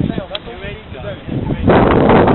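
Wind buffeting the microphone in loud low gusts, easing early on while faint distant voices come through, then rising loud again near the end.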